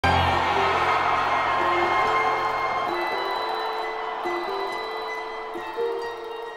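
Orchestral introduction to a musical-theatre song: a loud, full opening chord with held low bass notes that drop out about three seconds in, leaving a gentle melody of single notes that gradually gets quieter.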